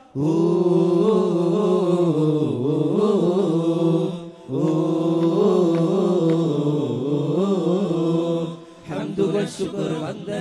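Arabic devotional chant sung in long, slowly bending held phrases, two of about four seconds each with a brief break between. It is the sung part of a duff (daf) troupe's performance.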